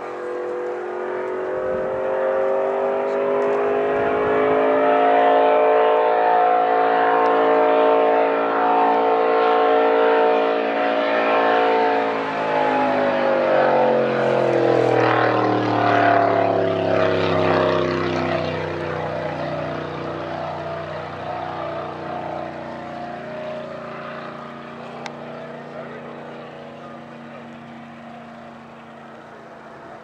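A 750 hp racing boat engine running hard as the boat passes close by. The engine gets louder over the first few seconds, drops in pitch as the boat goes past about halfway through, and then fades as it runs away.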